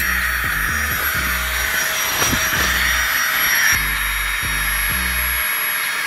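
Small electric air pump running steadily as it inflates a camping air mattress: a loud, even whirring hiss that cuts off near the end.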